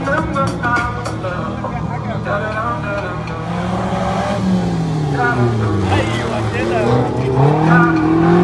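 Car engine revving on an autocross course: its pitch drops off as the car slows for a barrel turn a little after the middle, then climbs again as it accelerates away near the end.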